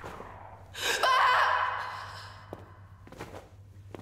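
A person's sharp gasping cry about a second in, trailing off over about a second.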